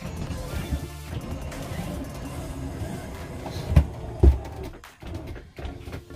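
Music playing over a steady low drone from the RV slide-out's electric motor drawing the room in. Two thumps about half a second apart come a little past the middle.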